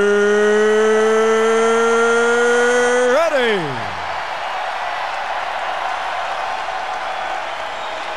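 A ring announcer's voice holding one long drawn-out note that rises slightly, then slides down and breaks off about three seconds in. After that comes a steady roar from a large arena crowd.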